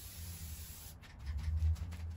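Aerosol spray can hissing steadily as paint is sprayed, cutting off about a second in, followed by a few light clicks.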